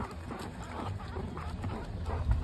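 Meerkats scrabbling and rustling about in a plastic bucket, with many small scratches and knocks and short animal calls mixed in, over a low rumble.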